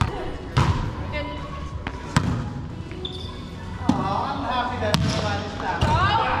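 Volleyball rally in a gym: about six sharp smacks of the ball off players' hands and arms and the floor, spread a second or so apart, echoing in the large hall. Players' voices are heard in the second half.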